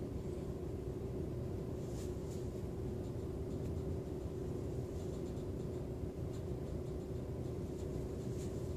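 Steady low room hum with a faint, constant mid-pitched tone running under it; nothing else happens.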